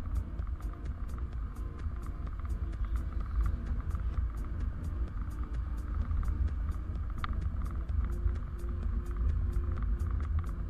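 Riding motorcycle: a steady low rumble of engine and wind noise. Music with an even beat runs over it.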